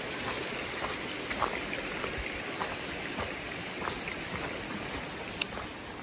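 A creek running steadily, an even rushing of flowing water, with a few faint steps on dry leaf litter.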